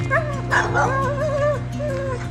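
A dog whining in several high, wavering whimpers, with background music underneath.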